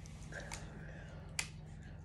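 Popping candy in milk chocolate crackling inside a mouth: two faint sharp pops, one about half a second in and a louder one near a second and a half.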